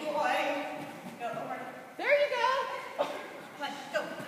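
Short called words from a person's voice with pauses between them, one call rising then falling in pitch about two seconds in.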